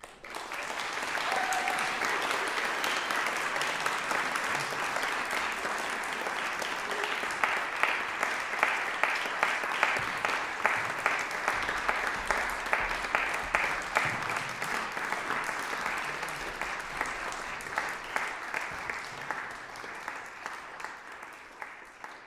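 Audience applause in a concert hall that starts suddenly and holds steady, with sharp individual claps standing out from about a third of the way in, then easing off near the end.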